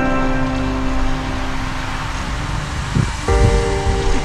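Background electronic music: a held chord under a swelling hiss, which stops about three seconds in as a new chord comes in with low beats.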